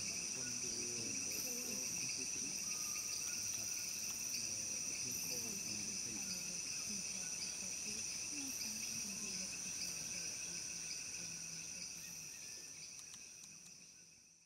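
Rainforest insect chorus: a steady, high-pitched buzzing at several pitches at once. It fades out near the end.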